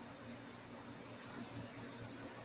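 Faint room tone: a soft, steady low hum under light hiss.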